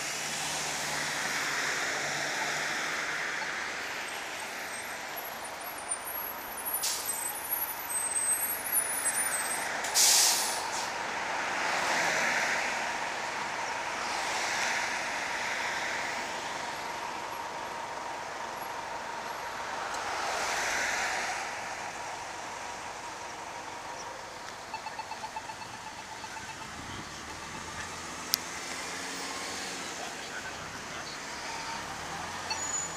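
Road traffic passing through a city intersection, cars going by in slow swells that rise and fall every few seconds. About ten seconds in there is one short, loud hiss, and near the end a run of quick small ticks.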